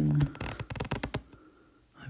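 Stylus tapping rapidly on an iPad screen, a quick run of light clicks lasting about a second, while the frozen note-taking app is not responding.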